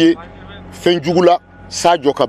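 A person speaking in short phrases broken by pauses, over a faint steady background hum.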